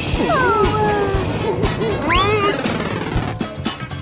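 Cartoon background music, with short squeaky sound effects that glide up and down in pitch over it.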